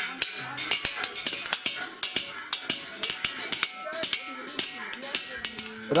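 Brass and metal vessels clinking and being tapped, with sharp irregular strikes several times a second.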